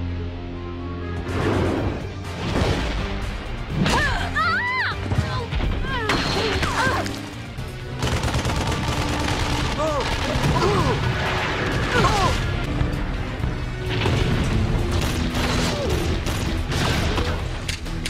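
Cartoon fight soundtrack: background music over repeated booms and blasts, with wordless shouts and grunts.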